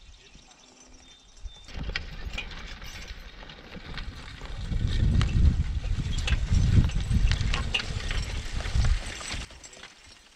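Percheron draft horse pulling a spring-tooth harrow through tilled garden soil: hoof steps with the drag and rattle of the harrow. The sound rises after about two seconds and is loudest as the horse passes close in the middle.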